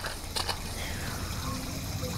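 Outdoor ambience: a low steady rumble with a few faint rustles and clicks, with distant voices faintly under it.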